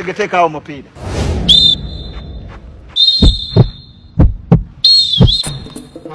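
A shrill whistle of the referee's sort, blown in three trilling blasts. Against the later blasts come heavy low thumps in pairs, about a second apart, in a heartbeat rhythm.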